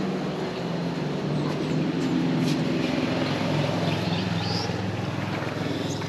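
A steady motor hum, an engine running at an even speed throughout.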